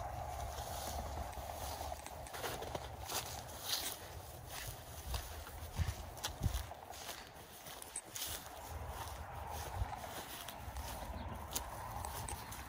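Footsteps walking through dry grass on open ground, an uneven run of steps over a steady low rumble.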